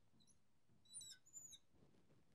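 Faint, short, high-pitched squeaks of a marker writing on a glass lightboard, a quick cluster of them about a second in.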